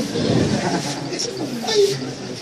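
A person's voice making indistinct, wavering low vocal sounds between phrases.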